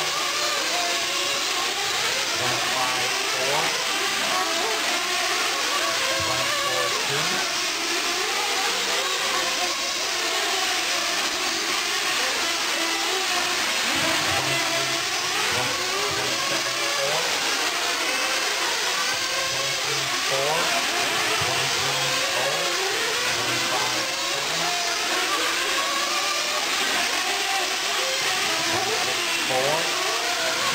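Several 1/8-scale nitro RC truggies racing together. Their small two-stroke glow-fuel engines rev up and down in overlapping whines that rise and fall without a break.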